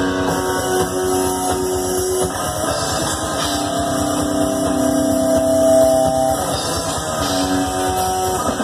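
Live thrash metal band: heavily distorted electric guitars holding long sustained chords that change every one to three seconds, over a fast, busy low rhythm.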